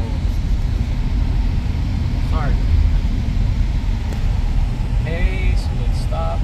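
Steady low rumble inside the cab of a running 2019 Ford Ranger, its engine and road noise heard from the interior.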